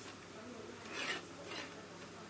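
Hand rubbing along a carbon fishing-rod blank: two short dry swishes of skin sliding on the rod, about a second and a second and a half in.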